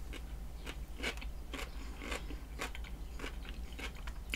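Chewing a mouthful of raw cucumber: soft, wet crunches repeating about twice a second.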